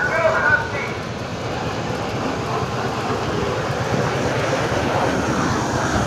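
Steady outdoor background noise, a low rumble and hiss that grows slightly louder, with a person's voice briefly in the first second.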